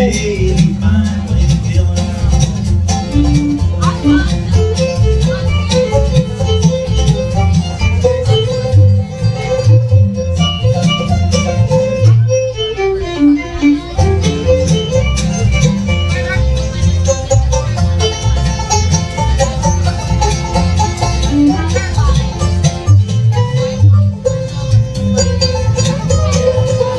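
Live bluegrass band playing an instrumental break: fiddle and banjo over acoustic guitar, with an upright bass keeping a steady beat.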